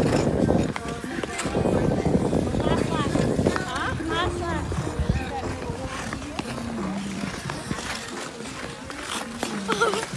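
Indistinct voices calling and chattering, several at once and none close, over a rough background noise that is a little louder in the first few seconds.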